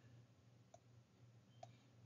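Near silence: a faint steady low hum with two small, brief clicks about a second apart.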